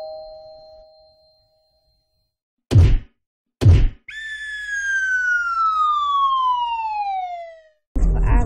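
Cartoon-style sound effects: a bell's ring fading out, then two punch hits about a second apart, then a long whistle sliding steadily down in pitch.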